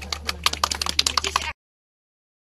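A rapid, irregular run of sharp clicks, about a dozen a second, over a steady low hum. It cuts off suddenly about a second and a half in.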